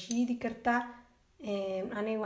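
A woman talking, with a short pause a little after a second in.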